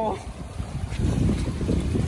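Wind buffeting the microphone, over sea water washing against rocks.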